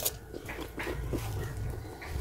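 A crisp crunch as a slice of unripe green mango is bitten, then chewing with a run of smaller irregular crunches close to the microphone.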